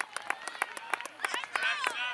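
Several spectators clapping unevenly, with voices calling out in the second half.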